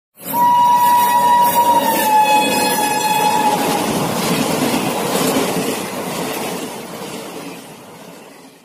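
Metre-gauge passenger train's horn blowing one long note as the train passes at speed, its pitch dropping about two seconds in as it goes by. Beneath and after the horn, the rushing rumble of the passing train fades away toward the end.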